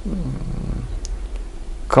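A man's voice in a low, creaky, drawn-out hesitation sound between words, falling in pitch at first and fading out about a second in, over a steady low hum.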